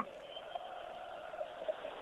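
Faint, steady stadium crowd murmur of football fans, heard over a narrow, telephone-like broadcast line.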